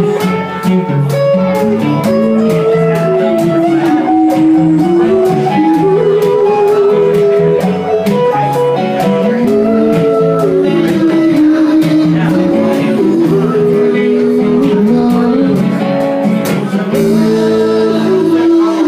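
Live band music: a sung lead vocal over two strummed acoustic guitars, with a steady rhythm running through.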